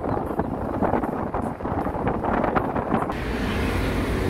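Road and wind noise of a car driving along, heard from inside with wind buffeting the microphone. About three seconds in it cuts to a steadier background hum.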